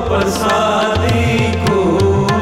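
Sikh shabad kirtan: harmoniums holding steady chords under a sung line that glides down in pitch, with tabla strokes and the bass drum's bending low notes.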